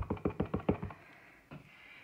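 Quick, light taps of a clear acrylic block carrying a photopolymer stamp on a foam ink pad, about six taps a second, stopping about a second in. This is the stamp being inked with super light taps so that the ink goes on evenly.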